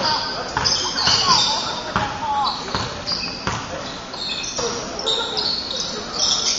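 Basketball game on a hardwood gym floor: a ball bouncing, sneakers squeaking in many short high chirps, and players calling out indistinctly, all echoing in the large gym.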